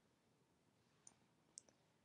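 Near silence with two faint clicks half a second apart, about a second in: computer clicks made while editing on the computer.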